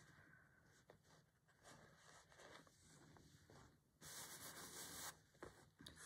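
Faint rustling and rubbing of layered fabric panels being handled and shifted by hand, with a brief louder brushing of fabric about four seconds in.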